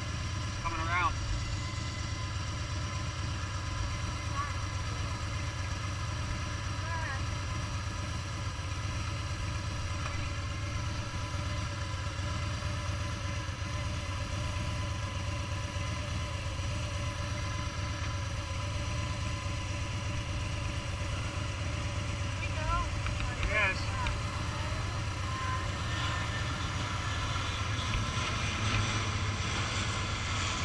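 Motorcycle engine idling steadily while stopped. Near the end, a low-flying propeller aircraft passing overhead grows louder over the idle.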